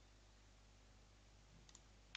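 Near silence with faint steady hiss, and one faint double click near the end from a computer mouse button or key being pressed.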